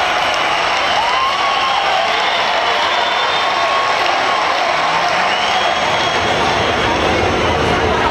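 A large crowd's noise: many voices talking and calling out at once, a steady, dense babble.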